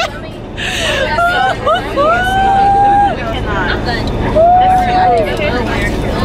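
Young women's voices inside a moving coach bus: chatter with two long, high held vocal notes, over the bus's steady low rumble.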